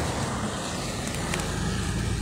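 Steady road noise from a moving vehicle, engine and tyres, with a few faint clicks about a second in.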